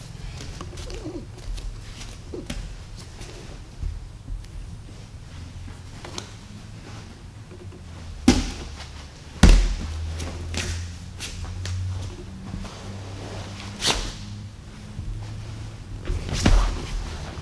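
Grapplers in cotton gis moving on foam jiu-jitsu mats: fabric rustling and shuffling, with a few dull thuds of bodies and feet landing on the mat, the loudest about nine and a half seconds in.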